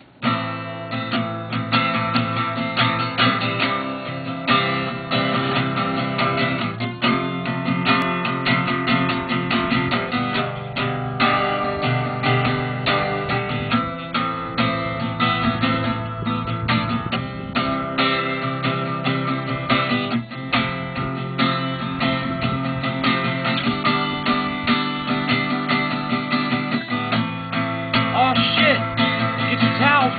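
Acoustic guitar strummed in chords, starting suddenly and going on steadily.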